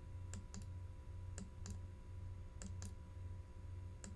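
Faint pairs of short clicks, about one pair every 1.2 seconds, from clicking through a slide presentation on a computer, over a steady low electrical hum.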